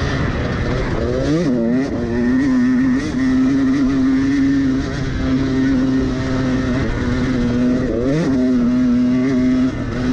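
Dirt bike engine running under load at speed on a dirt track, with the revs rising sharply and settling twice, about a second and a half in and again about eight seconds in, between stretches of steady running.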